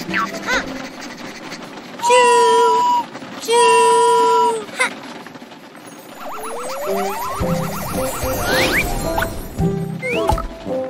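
A cartoon toy train's whistle tooting twice, each toot held steady for about a second, over light children's music. Later comes a rising whistle sound effect with a fast, even clicking, then another quick rising whistle.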